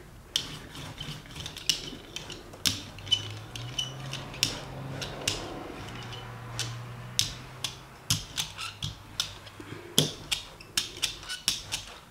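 Rubber brayer rolling acrylic paint across a gelli plate: the tacky paint gives irregular sticky clicks and crackles as the roller passes back and forth, with a faint low hum in the middle of the rolling.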